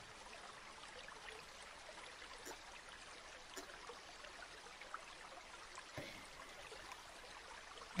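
Near silence: a faint steady hiss with a few soft, scattered ticks.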